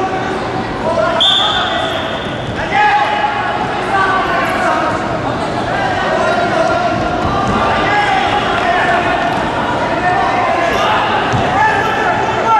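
A referee's whistle blown once, a short steady shrill blast about a second in, restarting the wrestling bout. Indistinct voices echo in a large hall throughout, with a few dull thuds.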